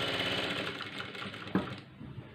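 Industrial sewing machine stitching fast at first, then slowing and dying away over the second half, with a sharp click about one and a half seconds in.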